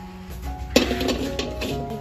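Background music with a light melody. About three-quarters of a second in, a sharp clink of a cleaver blade against a metal bowl as minced garlic and shallot are scraped onto marinated pork, followed by soft scraping.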